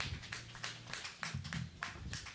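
Sparse, scattered hand claps from a small audience right after a live band's song ends, with a low note humming underneath.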